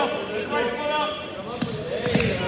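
Shouting voices throughout, with a couple of heavy thuds near the end as the wrestlers' bodies hit the mat in a takedown.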